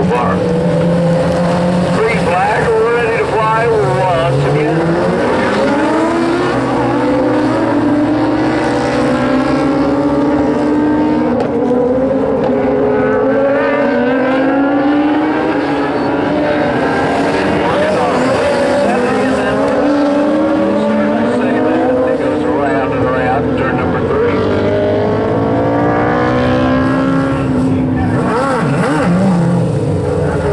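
A pack of dwarf race cars with small motorcycle engines racing on a dirt oval. Several engines sound at once, each rising and falling in pitch as the cars accelerate out of the turns and lift off going in.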